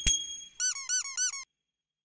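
Logo-animation sound effect: a sharp ringing chime strike, then four quick squeaky chirps that each rise and fall in pitch, cutting off abruptly about a second and a half in.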